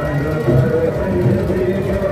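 Many people's voices talking and calling over one another, with music faintly underneath.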